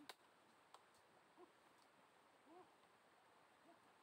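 Near silence, with three faint, short animal calls that rise and fall in pitch, spread about a second apart, and a couple of soft clicks near the start.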